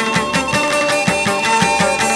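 Instrumental chầu văn (hát văn) ritual music: a plucked lute carries the melody over a steady percussion beat of about four strokes a second.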